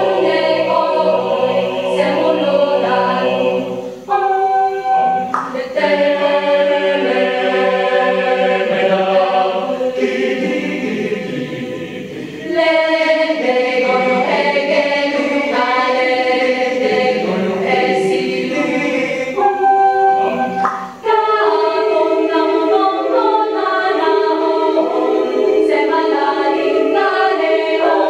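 Mixed-voice choir singing a cappella in several parts in harmony, with short breaks between phrases about 4 seconds in and again about 21 seconds in.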